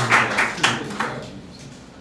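Audience applause dying away over the first second and a half.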